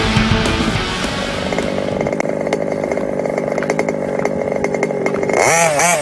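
Rock music gives way about two seconds in to the small two-stroke petrol engine of an HPI Baja 5B RC buggy running with a steady buzz. Near the end it revs up sharply and its pitch starts rising and falling quickly.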